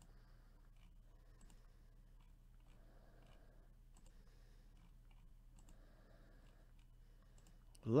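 Faint computer mouse clicks, roughly one a second, as an on-screen button is clicked over and over.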